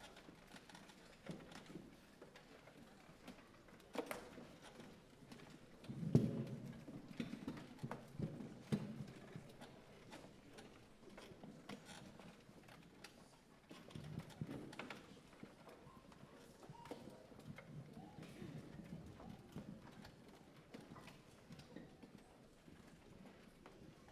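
Footsteps clopping and shuffling on hollow stage risers, with scattered knocks and a louder thump about six seconds in, over a faint murmur of a crowd.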